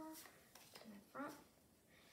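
Mostly speech: a young voice finishes a count and says one short word, with two faint clicks in between from trading cards being handled.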